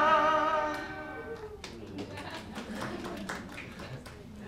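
Old recording of a 1952 Moroccan radio jingle for Angel chewing gum: a singer holds a long note with vibrato over a small orchestra, and it fades out about a second and a half in. Quieter, scattered sounds follow.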